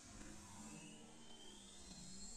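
Near silence: faint low background noise just after background music has faded out.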